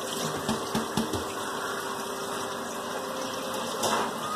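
Steady background hum and hiss with a faint held tone, a few soft low bumps in the first second and a short click near the end.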